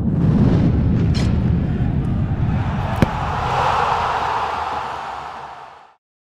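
Cinematic logo-sting sound effect: a low rumbling whoosh swells in and holds, a sharp hit comes about three seconds in, then a brighter shimmer rises and fades out to silence at the end.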